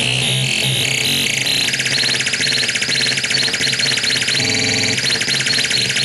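Homemade CMOS mini modular synth (4093 NAND and 4077 XNOR logic-chip oscillators) putting out harsh square-wave noise while its knobs are turned. A rapid, high-pitched pulsing chatter jumps between pitches, over a low buzz in the first second or so.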